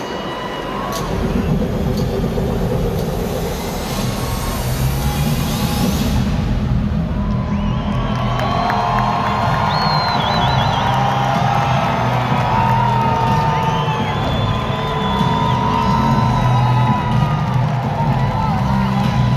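Arena sound-system music with a steady, heavy bass line, under a large crowd cheering that swells with many shouting voices from about eight seconds in.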